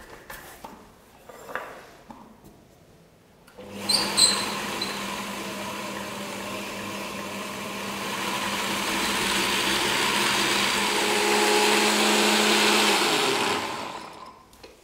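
Stand mixer's spice-mill attachment grinding toasted caraway seeds. After a few seconds of quiet handling the motor starts with a short rattle of seeds, runs steadily for about nine seconds, growing a little louder towards the end, and then stops.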